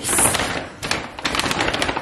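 Brown paper grocery bags rustling and crinkling as they are opened and handled, a burst of crackling loudest at the start.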